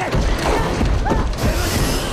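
Monster-movie sound effects of an alligator attack: a loud, dense low rumble with irregular clattering, crashing hits.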